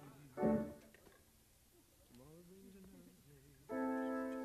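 Studio session tape between takes. A short loud pitched sound comes about half a second in, then a faint voice in a quiet stretch. Near the end the session band starts a held chord.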